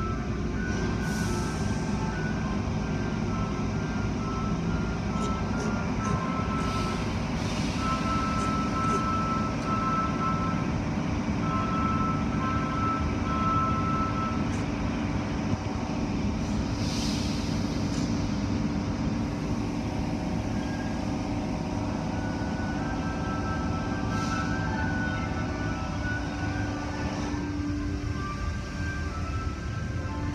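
Automatic car wash running, heard through a glass viewing window: a steady low rumble of the wash machinery and water spraying on a car, with brief louder surges of spray hiss a few times.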